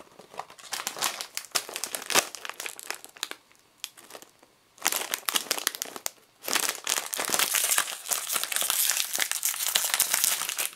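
Foil-laminated snack pouch crinkling in the hands as it comes out of its paperboard carton, with a brief lull around four seconds. From about six and a half seconds the crinkling turns dense and continuous as the foil pouch is pulled open.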